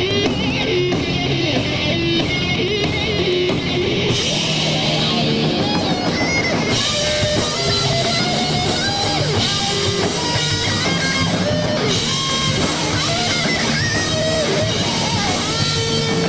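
Live hard rock band playing: electric guitars, bass guitar and drum kit. The sound gets brighter about seven seconds in.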